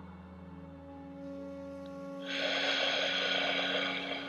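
A deep release breath: a long, audible exhale out through the mouth beginning about two seconds in, over soft, steady ambient background music.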